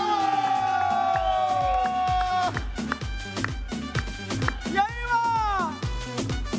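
Upbeat dance music with a steady low beat, about two thumps a second. Over it, a long falling whooping glide runs through the first two seconds, and a short meow-like call rises and falls about five seconds in.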